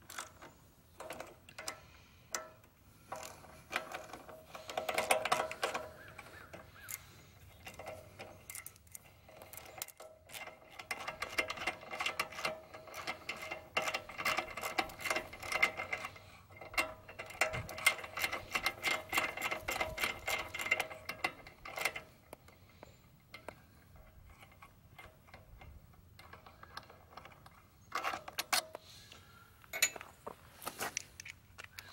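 Hand socket ratchet clicking in long runs of fast ticks as bolts are turned out of a Honda small engine, with scattered single clicks and knocks from parts being handled in between.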